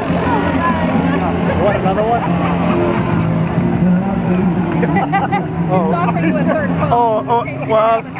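Small motor scooter engine running with a steady low drone, over the chatter of a street crowd; the drone stops about seven seconds in.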